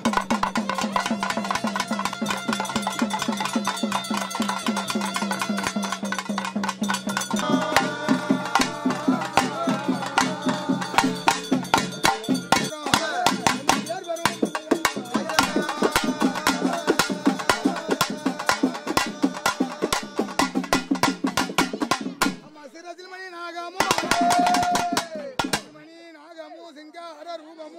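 Fast, even beating on a small hand-held drum with pitched sounds carrying over the beat; the drumming stops near the end, followed by a brief loud pitched sound.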